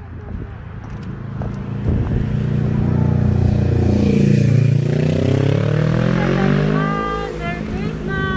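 Sport motorcycle passing close by: the engine grows louder to a peak about four to five seconds in, then drops in pitch and fades as it goes past.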